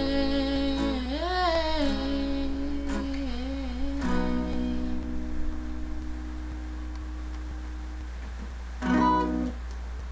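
A woman hums a wordless closing melody over strummed acoustic guitar, then the last guitar chord is left ringing and slowly dies away. A brief louder sound comes near the end.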